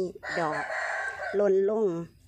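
A rooster crows once, short, in the gap between spoken words.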